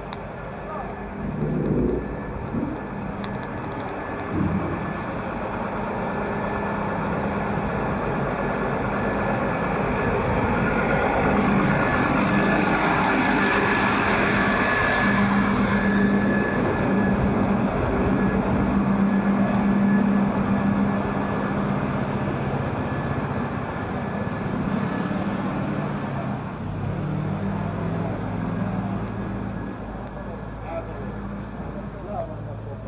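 A motor vehicle engine running close by with a steady low hum. It grows louder over several seconds, stays loud through the middle, then eases off, with street noise and passing voices around it.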